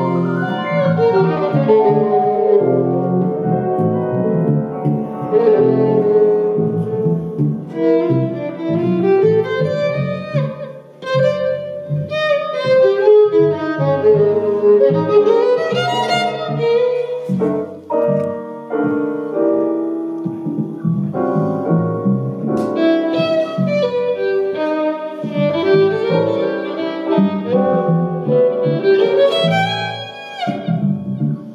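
A violin and a digital piano playing live together. The violin carries a melody over the piano, and the music eases off briefly twice.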